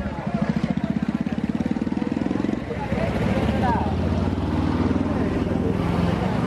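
A vehicle engine running close by, with a fast, even low pulse for the first couple of seconds that then settles into a steadier hum. A crowd's voices and shouts sound over it.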